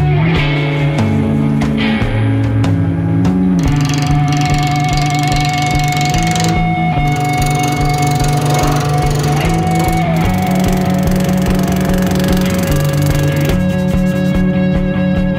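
Background music: a long held lead note that wavers, over a bass line moving in steps.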